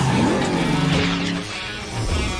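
Batmobile engine and thruster sound effect as it drives, with a rising whine at first, then a steady low drone that drops away about one and a half seconds in.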